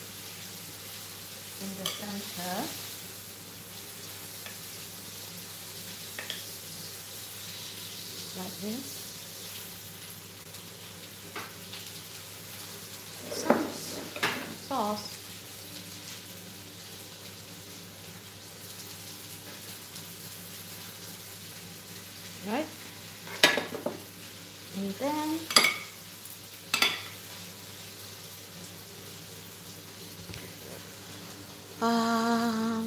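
Serving cutlery clinking and scraping against china plates as tomato and mozzarella slices are lifted and laid out, in two clusters of sharp clinks about halfway through and again near the end, over a steady background hiss.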